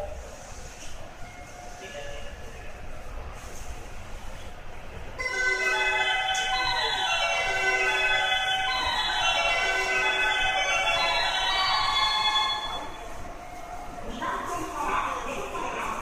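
The Mitsubishi GTO-VVVF inverter of a Rinkai Line 70-000 series train whines as the train starts to accelerate. About five seconds in, a cluster of several tones starts up, some holding steady and some gliding up or down, and lasts about seven seconds. It then gives way to duller rolling noise near the end.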